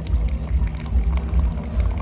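Single-serve coffee maker brewing: a steady low hum from the machine and a thin stream of coffee pouring into a ceramic mug.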